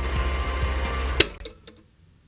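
Film projector running with a mechanical clatter under background music; both cut off with a sharp click a little over a second in, followed by two fainter clicks.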